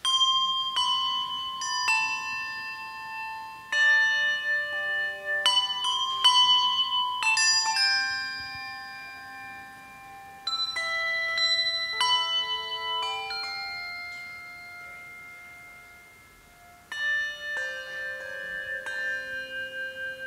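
A handbell choir ringing a carol introduction: struck chords and melody notes that ring on and die away, in phrases, with a lull about three-quarters of the way through.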